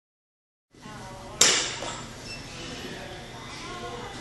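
A bat striking a baseball once off a tee: a single sharp crack about a second and a half in, with a short ringing tail, over voices talking in the background.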